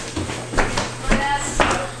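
Footsteps of someone walking through the rooms, soft knocks about twice a second, over a low steady hum.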